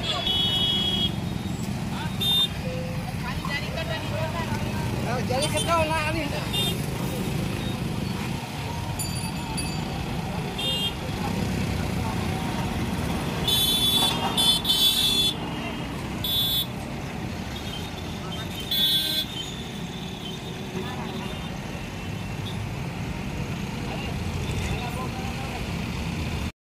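Traffic jam: a steady rumble of idling and slow-moving engines, cut by repeated short vehicle-horn toots, with several horns together about fourteen seconds in. Voices carry in the background.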